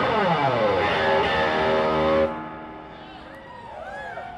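Amplified electric guitar on a Stratocaster-style instrument: the notes dive down in pitch over the first second, settle into a loud held chord that cuts off suddenly just after two seconds, then give way to quieter bending notes.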